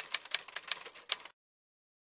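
Typewriter sound effect: a rapid run of sharp key clicks, about seven a second, that stops abruptly about a second and a quarter in.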